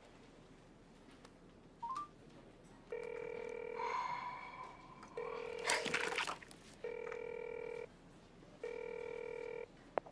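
Mobile phone call ringing out: the caller hears the ringback tone through the handset, four one-second tones about two seconds apart, while waiting for the other party to answer. A short rising beep comes about two seconds in, and there is a brief rustle midway.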